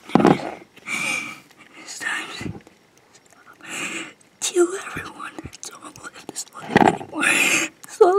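A boy whispering and breathing heavily, in short breathy bursts with quiet gaps between.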